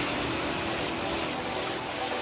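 Psytrance electronic music: a sustained wash of synthesized noise over a held synth tone, following a falling sweep.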